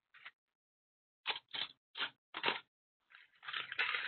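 Metal paper clips shaken out of their box onto a folded-paper bridge in four short bursts.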